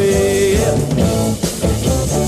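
Mid-1960s rock recording by a beat group: guitars, bass and drums playing together, with one note held for about the first half-second.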